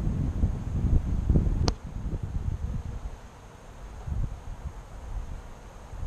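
Wind buffeting the microphone with a low rumble for the first second and a half, a single sharp click at about 1.7 seconds, then a quieter outdoor background.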